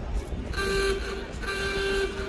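Two short horn-like toots on one pitch, about a second apart.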